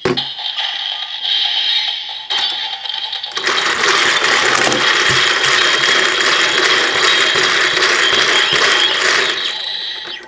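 The hand crank of a DX Build Driver toy being turned, its plastic gears and ratchet giving a fast clicking clatter that grows louder and denser about three and a half seconds in and keeps up until near the end.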